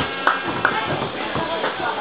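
Onlookers chattering, with music playing faintly behind and a few sharp taps near the start.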